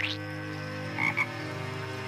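Cartoon frog croaking, with two short croaks about a second in over a steady held tone.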